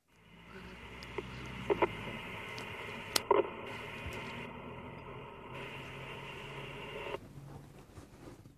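Two-way radio static: a steady hiss that starts suddenly and cuts off about seven seconds in, with a few sharp clicks around two and three seconds in.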